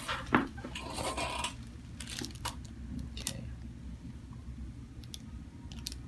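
Quiet handling sounds: a few small clicks and soft rustles as hands shift a person's head on a padded treatment table, over a low steady room hum.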